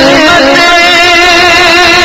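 Male voices singing a naat in long held notes, the pitch wavering slightly.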